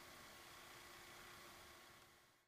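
Near silence: faint steady hiss of room tone with a light electrical hum.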